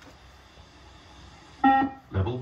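Beep test (multistage fitness test) recording sounding one short, loud electronic beep about a second and a half in, the signal that a shuttle is due to be completed and the next one begins.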